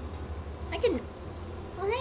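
Two short voice-like pitched calls over a steady low hum: the first, about a second in, falls in pitch; the second, near the end, wavers up and down.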